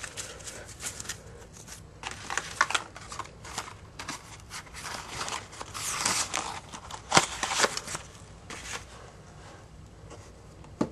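Yu-Gi-Oh trading cards being handled and shuffled close to the microphone: irregular rustling and light clicks of card stock, with a longer, louder rustle about six seconds in and a sharp click just after seven.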